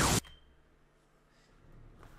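Loud playback audio, a voice with effects, cuts off abruptly a fraction of a second in as the episode is paused, leaving near silence with faint room tone.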